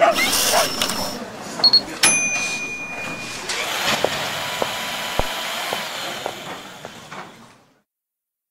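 A dense jumble of voices, clicks and knocks, with a few short steady beeps, fading out near the end.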